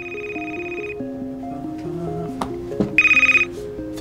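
Telephone ringing twice, a steady high electronic ring lasting about a second at first and about half a second the second time, over soft background music.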